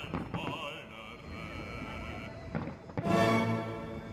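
Classical, opera-style music with held notes, played over a fireworks display, cut by a few sharp firework bangs. The loudest moment is a short, loud burst about three seconds in.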